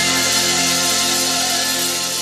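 Live folk band with accordion holding one long sustained chord, steady and loud, with a wavering high melody line over it.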